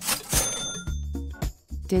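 A short, bright sound effect: a burst of noise with a high ringing tone that fades within about a second, over background music with steady low bass notes.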